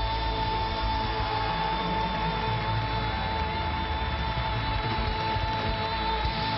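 A singer holding one long high note over a pop band accompaniment in a live stage performance.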